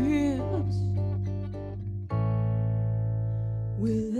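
Live band music: an archtop guitar picks a few notes and then lets a full chord ring for over a second, over a steady bass note. A woman's singing voice ends a phrase at the start and comes back in near the end.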